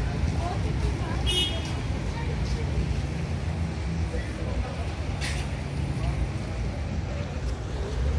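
Street traffic on a rain-wet road: a steady low rumble of vehicle engines. A short high squeal comes about a second in, and a brief hiss around five seconds in.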